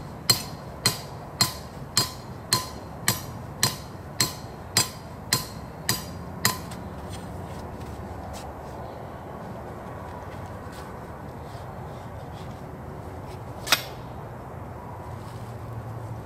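A hammer driving a trap-anchor stake into the ground: about a dozen even strikes, roughly two a second, that stop after about six seconds. Later there is a single sharp click.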